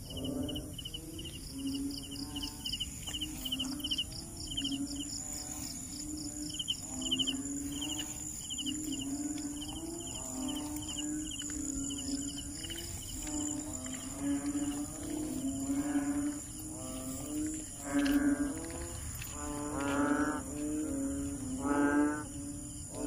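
Frogs croaking repeatedly in a chorus, low calls about once a second that grow louder near the end. A rapid series of high insect chirps runs through the first half, over a steady high-pitched insect hum.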